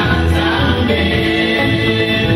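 Live gospel music: a group of women and men singing together into microphones over a band with electric guitar.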